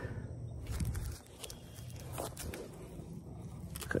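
Faint handling noise: soft rustles and a few light clicks as fishing gear is handled, over a low rumble.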